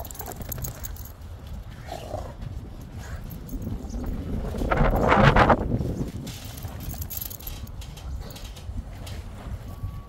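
A Rottweiler growls once, roughly and for about a second, about halfway through. Wind rumbles on the microphone throughout.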